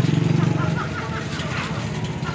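Busy street market ambience: a vehicle engine runs close by with a rapid pulsing rumble, loudest at the start and easing off, over the chatter of passing people.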